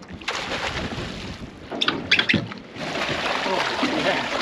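Seawater splashing and sloshing at a boat's stern as a hooked Spanish mackerel is hauled in alongside, with a few sharp splashes about two seconds in.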